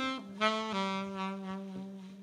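Saxophone playing a short fill of a few held notes over the band, in a slow jazz-ballad arrangement, fading away toward the end.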